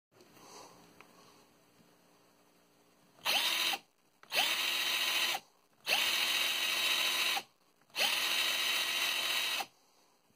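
Drill Master 18-volt cordless drill's brushed motor run four times in short trigger pulls, about three seconds in, each run spinning up quickly to a steady whine and then stopping; the runs get longer, the last about a second and a half. The motor sparks inside at the vents as it runs.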